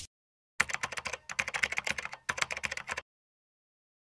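Computer-keyboard typing sound effect: a run of quick, uneven clicks that starts about half a second in and stops about three seconds in.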